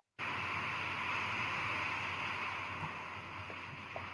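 Steady hiss of background noise on the video-call audio, starting after a brief moment of total silence and fading slightly near the end.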